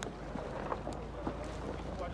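Steady low rumble of wind buffeting the microphone, under faint scattered voices of a crowd standing around outdoors. There is one sharp click right at the start.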